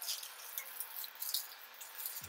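Faint handling noise: a quiet hiss with a few light ticks as the keyboard is held in the hands.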